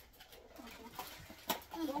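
Faint handling of a small cardboard blind box and foil pouch, with one sharp click about one and a half seconds in.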